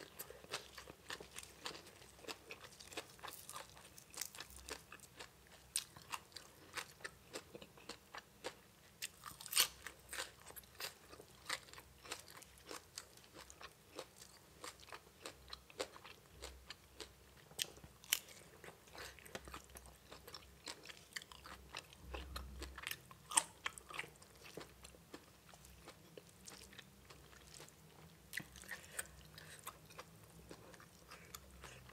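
A person chewing and biting into spicy green papaya salad with raw shrimp: irregular crisp crunches and wet chewing clicks.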